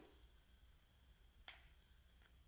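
Near silence with two faint, sharp clicks, the second about a second and a half after the first.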